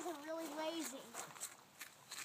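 A high-pitched voice holds a drawn-out wordless sound for under a second, then a few faint clicks.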